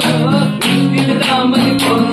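Acoustic guitar strummed in a steady rhythm, with a man singing along and hands clapping to the beat.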